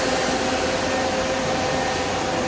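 Parked Scania coach running at idle: a steady mechanical whir with a constant whine over it.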